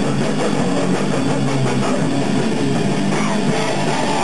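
Live metal band playing loud, dense music dominated by electric guitar, unbroken throughout.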